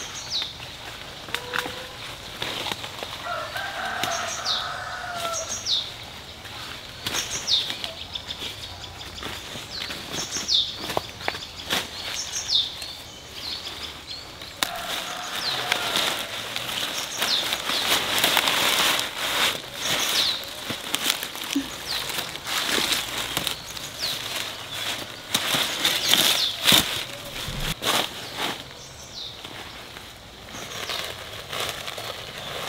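Leafy plant stems being snapped and bunches of leaves rustling as greens are picked and piled into a woven basket, with a busier stretch of rustling in the second half. Birds call throughout: one gives short falling chirps about every second, and twice a longer, lower call like a rooster crowing is heard.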